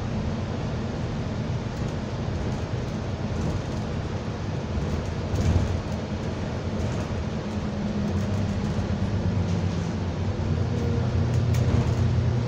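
Steady engine and running noise inside the lower deck of London bus T310 while it is in service, with a brief louder bump about five and a half seconds in. The drone grows a little louder near the end.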